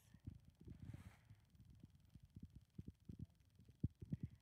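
Near silence, broken by faint, irregular low thumps on the microphone, with a stronger one near the end.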